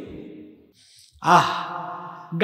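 A man's voice through microphones: a chanted phrase trails off with echo, a brief breath, then about a second in a held voiced note that starts loud and fades, sigh-like.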